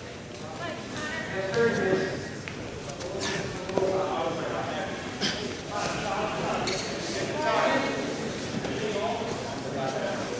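Indistinct voices calling out in several bursts, echoing in a large gym, with a few short knocks.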